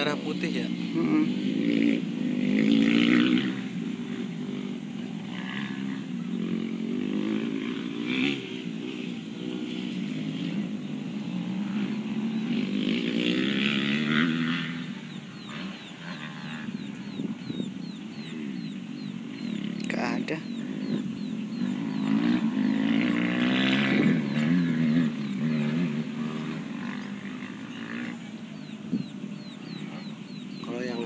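Indistinct voices talking in the background, louder in a few stretches.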